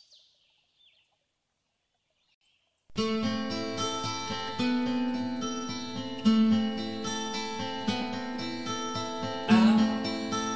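Faint bird chirps fade out, then after a short silence an acoustic guitar intro starts abruptly about three seconds in, playing chords in a steady rhythm.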